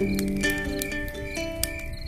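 Background music of plucked acoustic guitar notes, getting quieter toward the end.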